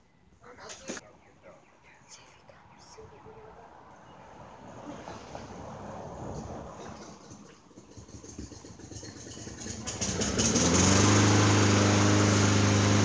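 About ten seconds in, an engine starts up, its pitch sliding up briefly before it settles into a steady, loud run. Before that, a low noise swells and fades.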